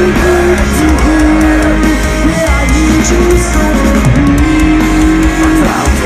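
Metalcore band playing loudly live: electric guitar, bass and drums, with a long held melody line over them.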